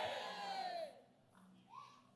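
A voice in the congregation calling out in one long, high-pitched cry that fades out about a second in. A short, faint rising call follows near the end.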